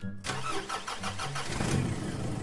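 Car engine starting and running, with a rapid ticking clatter. It comes in suddenly just after the start and grows louder about one and a half seconds in.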